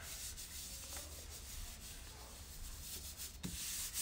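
Hands rubbing and pressing over a folded sheet of paper: a faint, steady swishing of palms on paper, spreading the wet paint inside the fold so it prints on both halves.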